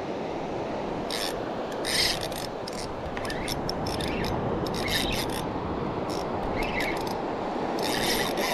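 Steady wash of surf, with irregular short scratchy rasps close to the microphone as a spinning rod and reel are handled.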